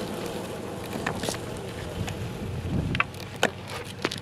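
Longboard wheels rolling on asphalt: a steady rolling noise with wind on the microphone, easing a little near the end, with a few sharp clicks about a second in and near the end.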